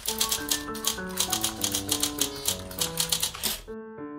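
Typewriter key-click sound effect, about five or six clicks a second, over background music of held notes; the clicks stop shortly before the end, leaving the music alone.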